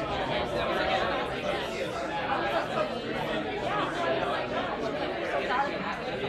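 Many people talking at once: a steady hubbub of overlapping conversation with no single voice standing out.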